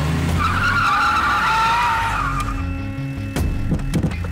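Mahindra Scorpio SUV's engine running as its tyres skid to a stop on a dirt track, with a wavering squeal through the first half, followed by two sharp knocks near the end.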